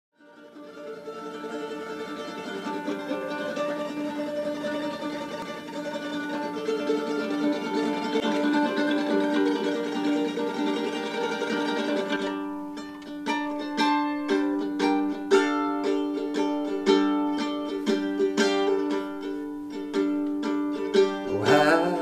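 Instrumental opening of a song. A held, layered chord fades in and sustains for about twelve seconds, then a quickly picked plucked-string part comes in over it.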